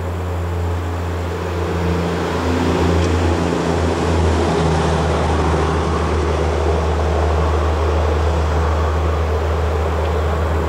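A vehicle's engine running steadily, heard from inside the cabin: a loud low drone with a hiss of road or air noise over it. It grows a little louder about two seconds in.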